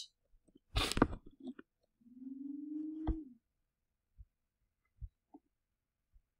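Quiet mouth sounds from a man at his computer: a short smack or breath about a second in, then a low hummed 'mmm' lasting just over a second that rises slightly in pitch, followed by a few soft clicks.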